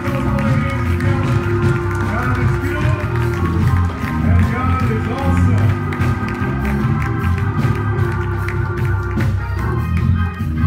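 Church band playing live, with held keyboard chords over bass and a drum kit.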